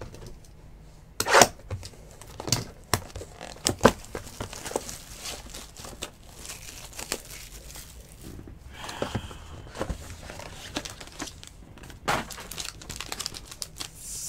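Plastic shrink wrap being torn off a trading-card box and crinkled by hand, with a few sharp snaps in the first four seconds and scattered crackling and rustling after.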